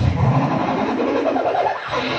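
A boy beatboxing into a handheld microphone, holding one unbroken buzzing vocal sound with a wavering pitch.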